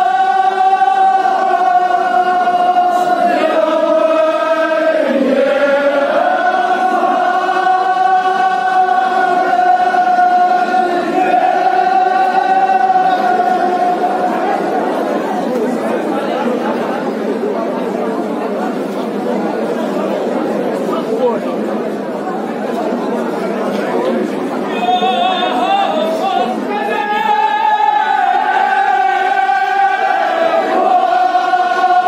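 Men's voices chanting a mourning chant in unison, with long held notes. About halfway through, the chant breaks into a mass of overlapping voices, and unison chanting starts again near the end.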